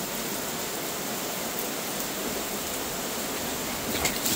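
Heavy rain falling steadily, a constant even hiss with no let-up.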